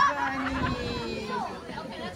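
Several people talking and chattering, with no clear words, growing quieter toward the end.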